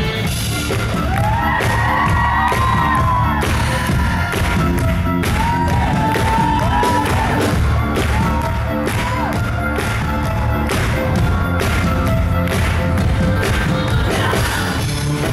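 Live band playing an amplified pop song with a steady drum beat, with the concert crowd cheering and whooping over it.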